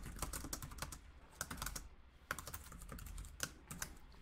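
Typing on a computer keyboard: quick, irregular runs of key clicks with a couple of short pauses.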